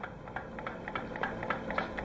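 Light, even clicking, about five or six clicks a second and growing slightly louder, from the converted air-compressor pump turning over on its flywheel.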